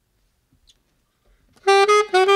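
Near silence with a couple of faint clicks, then a jazz saxophone comes in about a second and a half in, playing the first quick notes of a tune.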